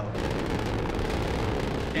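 Rocket engine running at liftoff: a steady, even rushing noise that starts abruptly.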